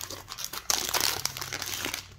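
Trading-card pack's plastic wrapper crinkling as it is torn open and handled, louder from about two-thirds of a second in and stopping at the end.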